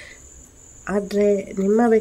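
A woman's voice starts speaking about a second in, after a short pause, over a faint, steady, high-pitched whine.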